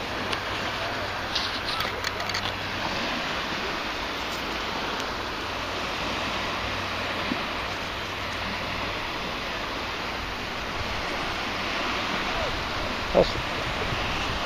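Steady rushing wash of bay surf and wind along the shoreline, with a few light clicks early on and a brief knock near the end.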